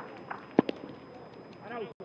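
Football players calling out on an open pitch, with a sharp thump of a ball being struck about half a second in.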